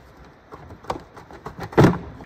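Plastic engine airbox being wiggled and pulled up off its rubber-grommeted mounting studs: quiet handling with a few light clicks, and a louder knock just before the end.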